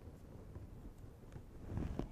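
Quiet, steady low background rumble with a few faint soft ticks of fabric appliqué pieces being handled on an ironing board.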